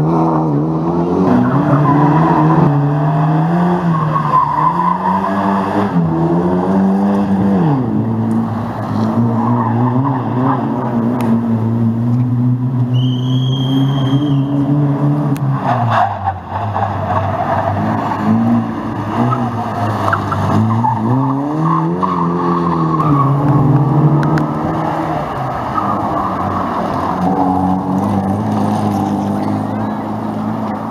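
Rally car engines revving hard, the pitch repeatedly climbing and then dropping as the cars shift gear and lift off. A brief high tyre squeal comes about halfway through.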